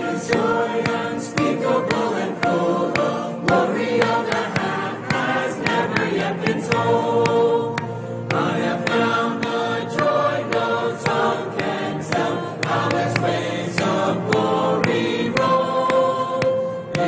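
Gospel hymn sung by a group of voices over a steady beat.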